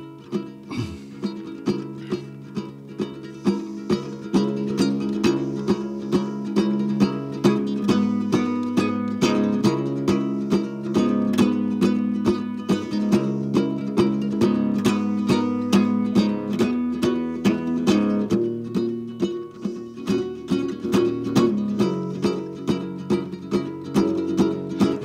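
Solo acoustic ukulele played with a steady picked rhythm, plucked notes over ringing chords, as the instrumental intro to a song before any singing.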